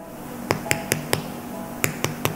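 Fingertip tapping the crust of a freshly baked baguette: four quick, crisp taps about a fifth of a second apart, then another near the end. The crisp sound shows a hard, crackly crust fresh from the oven.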